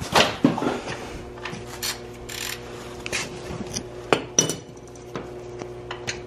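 Metal hand tools clinking, knocking and scraping during work under a car, with a few sharp knocks, the loudest a little past the middle. A steady low hum runs underneath.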